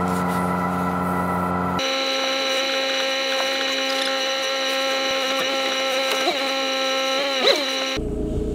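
A held, steady droning chord of several tones that starts abruptly, switches to a higher, thinner chord about two seconds in, and cuts off abruptly at the end.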